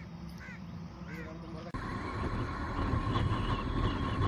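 Two short bird calls over a low background, then from a sudden cut just under two seconds in, the steady wind and road noise of a moving motorcycle, with a faint steady whine.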